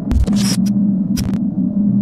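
Electronic logo-intro sound effect: a steady, loud hum with two short bursts of static hiss, matching a glitching title animation.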